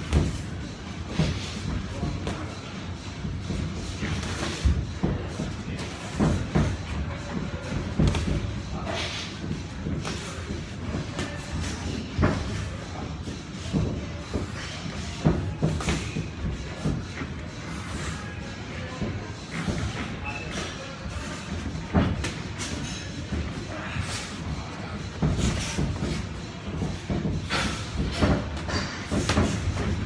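Boxing gloves landing on headguards and bodies during sparring: an irregular run of thumps, with music playing in the background.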